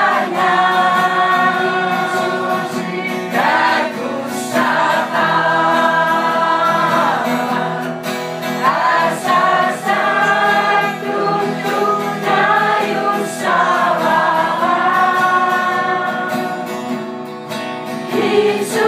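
Group singing of a slow, hymn-like song with long held notes, over guitar accompaniment.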